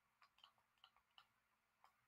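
Near silence, broken by a few faint, irregular ticks of a stylus tapping on a pen tablet while writing.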